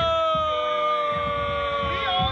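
Long held yell from a student, one high note sliding slightly down and lasting about three seconds, with a second, lower voice joining the hold about half a second in, over crowd noise.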